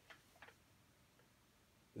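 Near silence: room tone with a few faint short clicks in the first half-second.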